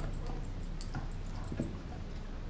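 A Doberman gnawing a raw beef leg bone: its teeth scrape and click on the hard bone in a run of irregular short ticks, with a louder knock about one and a half seconds in.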